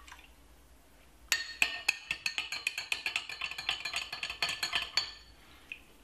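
Metal spoon stirring a drink in a glass tumbler, clinking rapidly against the glass with a ringing note; it starts about a second in and stops about five seconds in.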